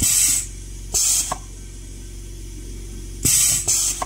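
Benchtop pneumatic crimping press hissing in short bursts of air as it cycles to crimp the metal crimp ring of an LC fiber optic connector: once at the start, again about a second in, and twice in quick succession near the end.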